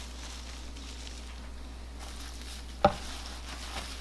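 Faint rustling of a paper towel and fresh cilantro sprigs being handled and rolled up on a cutting board, over a steady low hum, with one sharp tap about three seconds in.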